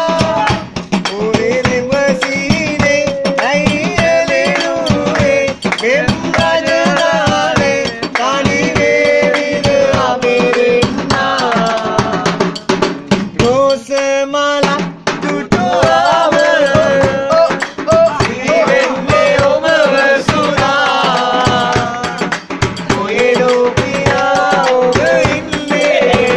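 Men singing a Sri Lankan baila medley together, with a hand drum beaten by both hands in a quick, steady rhythm.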